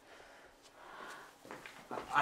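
Faint footsteps on a wooden floor, a few soft steps.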